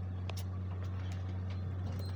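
A steady low hum with faint scattered clicks over quiet room noise.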